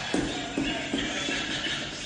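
Music playing, with about four low thuds in quick, even succession in the first second and a half.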